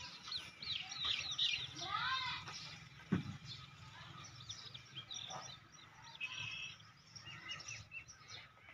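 Birds chirping: a busy chatter of short high calls with a few whistled glides, and one sharp knock about three seconds in.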